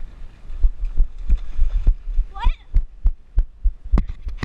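Irregular low thumps and knocks, a few a second, from a head-mounted GoPro being jostled as its wearer moves. A brief rising vocal cry about two and a half seconds in.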